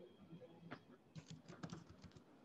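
Faint typing on a computer keyboard: a quick run of key clicks in the second half over quiet room tone.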